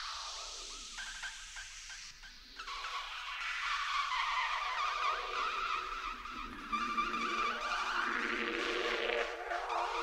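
Live electroacoustic music: electronically processed sounds, a sweep falling in pitch over the first two seconds, then a dense, fluttering, screeching texture that swells and rises again near the end.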